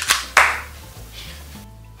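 One loud, sharp hand clap about half a second in, used as a slate to mark the start of a take, with background music underneath.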